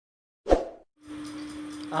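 A single short pop, the click sound effect of a subscribe-button animation, about half a second in. From about a second in, a steady low drone of background music begins, with a voice singing near the end.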